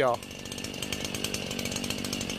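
A small two-stroke engine of a handheld gas power tool running steadily, with a high buzz and a fast, even pulse, starting just after a spoken word.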